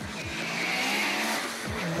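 Turbocharged Mitsubishi Lancer drag car accelerating hard down the strip. Its engine note drops in pitch at the start, and a loud hiss builds to its peak about a second in.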